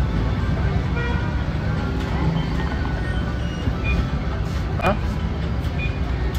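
Steady low rumble of outdoor background noise, likely street traffic, with faint voices over it and a short rising pitched sound about five seconds in.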